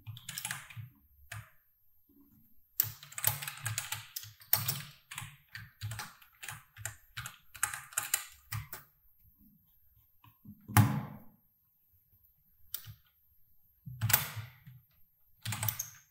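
Typing on a computer keyboard: irregular bursts of quick keystrokes broken by short pauses, with one louder single key strike about eleven seconds in.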